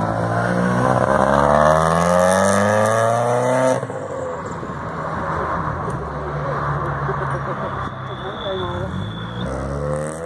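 Supercharged Volkswagen Corrado accelerating past, its engine note rising steadily for nearly four seconds. The note then cuts off suddenly and gives way to a lower, rougher sound as the car carries on away.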